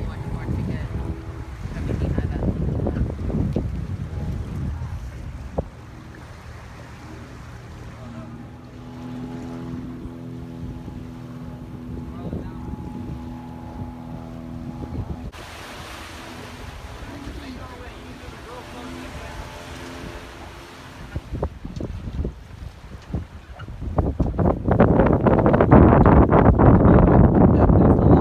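Wind buffeting the microphone aboard a sailing schooner, over water rushing past the hull. In the middle a steady low hum with several even tones is heard. The wind gusts become much louder over the last few seconds.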